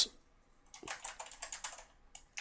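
Computer keyboard typing a file name: a quick run of keystrokes starting about a third of the way in.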